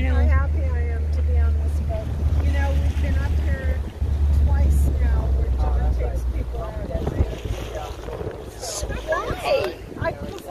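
Steady low rumble of a pontoon boat underway, wind buffeting the microphone over the motor, with people chatting in the background. The rumble drops away about seven seconds in.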